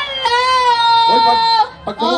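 A high voice calling out one long drawn-out note through a microphone, held for over a second and dipping slightly at the end, followed by a brief bit of speech.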